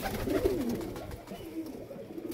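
Domestic pigeons cooing: low coos that rise and fall in pitch.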